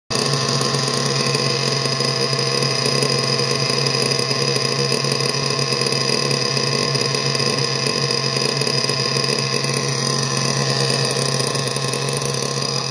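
Nitro glow engine of a 1/8-scale RC buggy idling steadily on its first fire-up, with a new carburettor still at its untouched factory settings.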